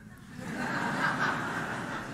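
A congregation laughing softly at a preacher's joke: a low spread of chuckles that comes up about half a second in and carries on.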